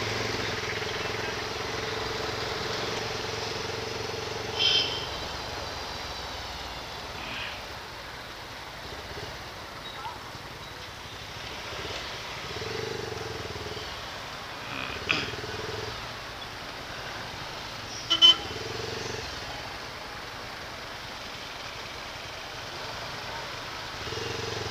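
Motorcycle engine running at low speed in slow city traffic, its note rising and easing as it creeps forward. There are short horn toots about five seconds in and again around 15 and 18 seconds.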